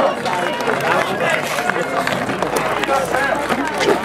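Many voices talking and calling out at once, close by and overlapping: baseball players chattering with each other as they come off the field.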